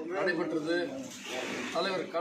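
A man speaking, in Tamil, with a short hissy pause about halfway through.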